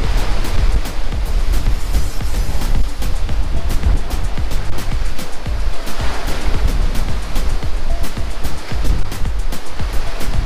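Ocean surf washing in and surging through a low rock sea cave over sand, a steady rushing of water, with background music over it.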